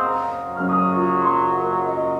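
Piano and bass trombone playing a contemporary classical duet, a series of held notes in the reverberant hall.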